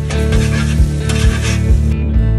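Eggs frying on a Blackstone flat-top griddle, sizzling, with a metal spatula scraping across the griddle top in a few short strokes. Background music with a steady beat plays underneath.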